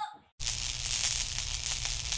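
Crackling static noise: a steady hiss with fine crackle that starts abruptly about half a second in, after a moment of silence.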